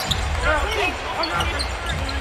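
Basketball being dribbled on a hardwood court, repeated low thumps over arena noise with faint voices in the background.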